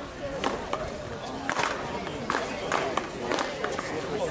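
Five or six sharp, irregularly spaced smacks of a paddleball struck by paddles and hitting a wall, with background chatter of players.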